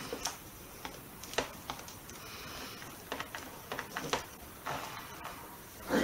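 Paper and card being pressed down and handled by hand on a cutting mat: scattered light taps and rustles, with a louder shuffle near the end as the album is moved.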